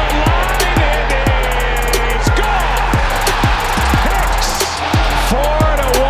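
Stadium crowd cheering loudly for a home run, with a music track under it that has a steady, heavy kick-drum beat.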